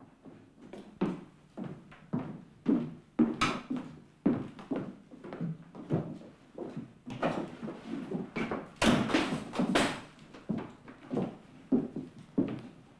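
A run of irregular knocks, thuds and rustles, as of movement about a wooden-floored room. The sounds grow busier and louder from about seven seconds in to about ten seconds in.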